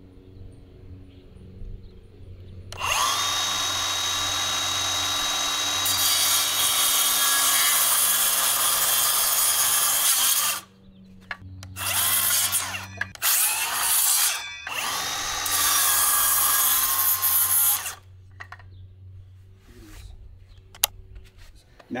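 Circular saw spinning up and cutting through a 4x4 post, with a steady high whine under the cutting noise. The first cut runs about seven seconds and stops. After a couple of short restarts, a second cut of about three seconds follows.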